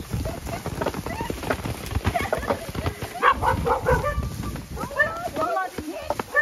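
Indistinct voices over rustling and light knocks as the branches of a plum tree are shaken and plums drop onto a plastic tarp held beneath it.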